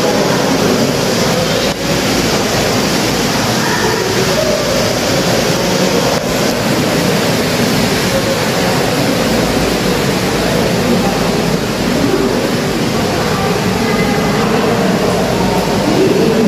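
Steady loud rushing noise with faint wavering tones underneath, unchanging throughout.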